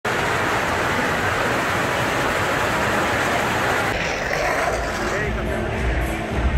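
Steady noise of splashing fountain water with crowd chatter in a large indoor hall; it thins and changes about four seconds in.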